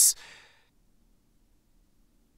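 A narrator's voice ends a sentence with a hissing final syllable that fades into a soft breath, then near silence for over a second.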